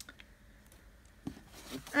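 Faint handling of paper: loose printed sheets slid aside and a page of a paperback colouring book being turned, with a light tap at the start.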